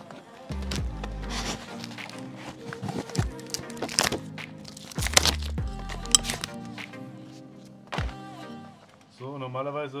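Background music playing throughout, with a few sharp knocks and clicks as the motorcycle's derby cover and its rubber O-ring are handled. A man's voice starts near the end.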